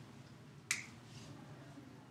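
A single short, sharp click about two-thirds of a second in, over quiet room tone.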